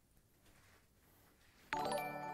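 Near silence, then near the end a livestream alert jingle starts suddenly: a chiming run of several held, bell-like notes.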